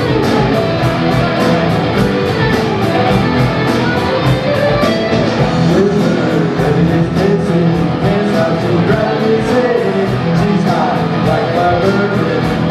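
Live rock band playing: electric guitars over drums, with a steady, fast cymbal beat.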